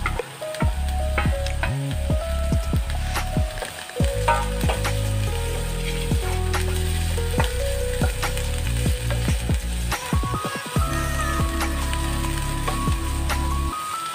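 Chopped onion and capsicum sizzling as they sauté in oil in a nonstick kadhai, with repeated knocks and scrapes of a wooden spatula against the pan as they are stirred. Background music with a bass line plays under it.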